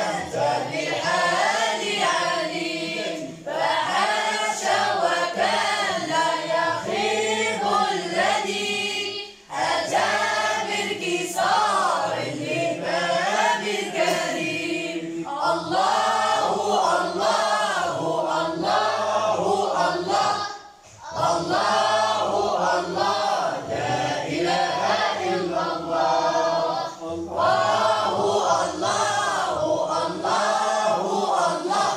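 A chorus of boys singing madih, Moroccan praise poetry for the Prophet, together and unaccompanied, in long melismatic phrases. The singing breaks off briefly twice, about nine and twenty-one seconds in, between lines.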